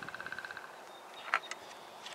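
A faint, rapid trill of about twenty pulses a second in the first moments, then a short chirp about a second later: a distant animal call outdoors.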